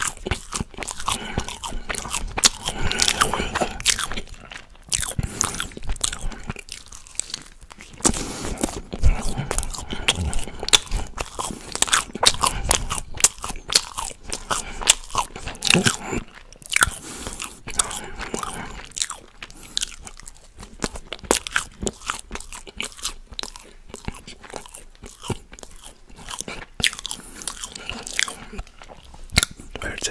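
Close-miked chewing of soft fried German quark balls, with loud wet mouth smacking and a dense, irregular run of clicks and smacks.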